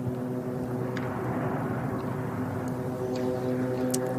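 A steady engine drone at a constant pitch, with a soft hiss over it.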